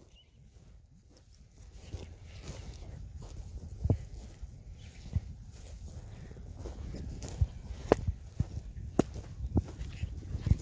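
Footsteps walking over pasture grass, with a steady low rumble under them. The short knocks come more often in the second half.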